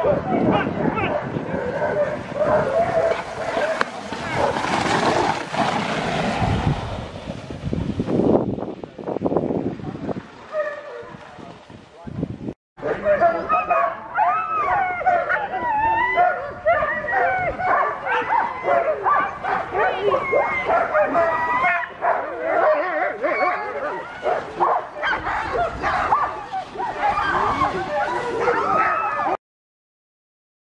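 Many sled dogs barking, yipping and whining with excitement as a team takes off. After a brief break about twelve seconds in comes a dense chorus of high yips and whines from many dogs at once, which stops abruptly near the end.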